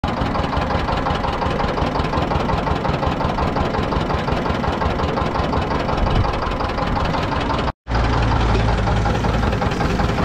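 Sugarcane crushing machine running steadily, its drive engine going with a rapid, even knock. The sound cuts out for a moment about eight seconds in, then carries on with a deeper hum.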